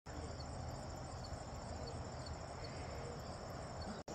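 Steady high-pitched insect chorus of crickets, with faint chirps repeating about twice a second and a low rumble underneath.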